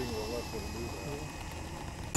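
Faint talking from people in the background over a low hiss, with a faint steady high whine underneath.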